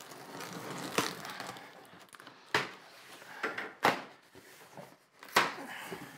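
Knife slicing through packing tape on a cardboard box, then the box's flaps being pulled open, with rustling cardboard and four sharp cardboard cracks about a second and a half apart.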